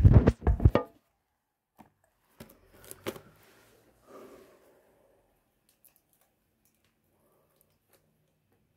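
A quick run of loud knocks and clatter in the first second, then a few lighter clicks and a rustle a couple of seconds later: a boxed perfume and its cardboard packaging being handled on a tabletop.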